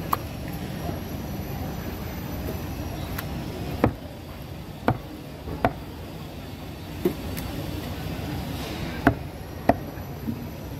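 Large knife chopping through fresh tuna loin and striking a wooden chopping block: about seven sharp knocks at irregular intervals, over a steady low background rumble.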